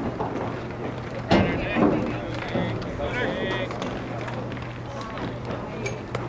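Outdoor ambience at a baseball field with scattered spectator voices calling out, and one sharp knock or clap about a second in.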